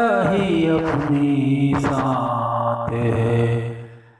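Music from a Hindi film song: a low voice, or an accompanying instrument, glides through a phrase and then holds one long steady note that fades away at the very end.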